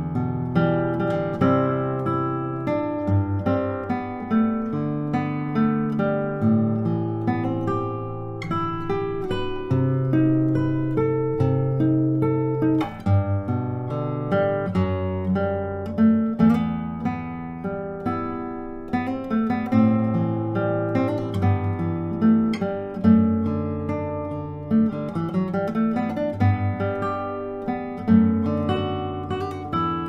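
Solo nylon-string classical guitar played fingerstyle at normal tempo: a plucked melody over a moving bass line, in an arrangement of a pop song.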